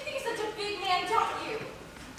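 Actors' voices speaking dialogue on stage, picked up by a camcorder in the audience.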